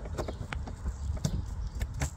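Plastic OBD power adapter being pushed and seated into a vehicle's OBD port under the dashboard: several light plastic clicks and knocks from the connector being handled.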